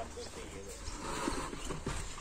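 Faint voices in the background over a quiet outdoor background, with a few soft clicks.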